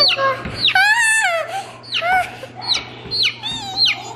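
A baby chicken (chick) peeping, with a string of short, sharply falling high peeps, about six in four seconds, and a few longer calls among them.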